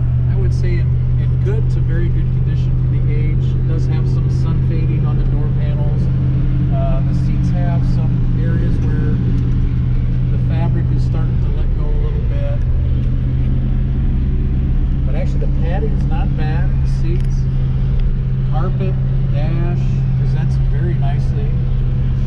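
A steady low engine hum, heard from inside the cabin of a 1967 Plymouth Fury III, running at an even level without change.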